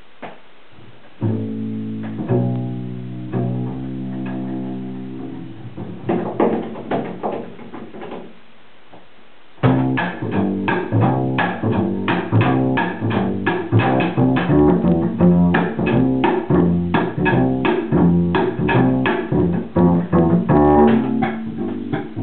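Double bass playing: a few long held notes from about a second in, some separate notes, then a short lull and, from about ten seconds in, a dense rhythmic run of plucked (pizzicato) notes.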